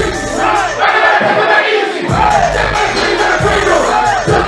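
A rap track playing loud through a club PA, with a packed crowd shouting and chanting along. About a second in, the bass drops out, then comes back in hard about two seconds in.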